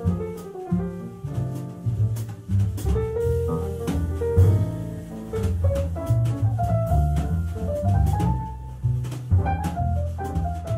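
Live jazz piano trio playing: acoustic piano, double bass and drum kit. The double bass is prominent in the low end under the piano's melody notes, with frequent drum and cymbal strokes.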